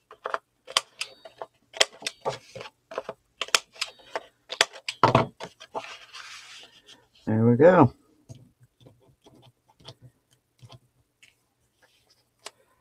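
Sharp clicks and taps of cardstock being handled and a corner-rounder punch snipping the corners of black cardstock photo mats, several a second through the first half. About seven seconds in, a person gives a short hum, the loudest sound, followed by a few faint taps of paper.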